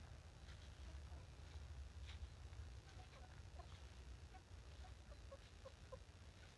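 Faint clucking of chickens: a series of short, soft calls from about three seconds in, over a low steady rumble.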